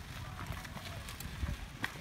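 A bicycle being ridden on a dirt road: a low rumble of wind and movement with scattered light clicks and knocks.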